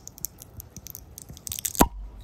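Swing-top stopper on a glass bottle of carbonated ginger brew being levered open by its wire bale: small clicks and scrapes of the wire, a quick run of clicks, then a sharp pop as the stopper breaks free near the end.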